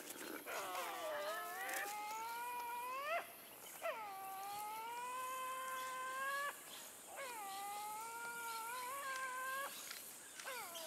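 Tasmanian devil calling: three long, drawn-out cries, each lasting about three seconds, rising in pitch at the end and cutting off sharply, with short pauses between them.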